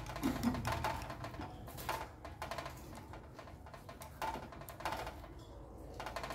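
Chopsticks stirring a watery pig's-blood mixture in a ceramic bowl, knocking against the bowl in a string of light, irregular clicks.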